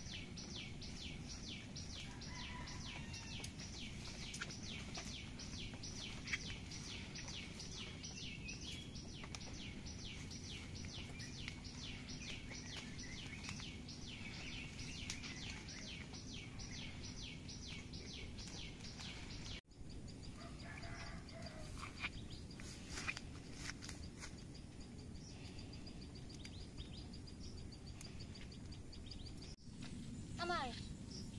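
Outdoor ambience: a high chirp repeating evenly about three times a second over a low steady rumble. About two-thirds through, the sound cuts off abruptly. After that comes a steady high buzz with a few scattered short calls.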